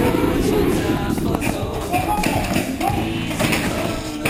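Indistinct voices with a few sharp taps of paintball markers firing.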